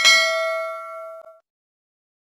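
Notification-bell sound effect: a single ding with several pitches ringing together, fading and cutting off about a second and a half in.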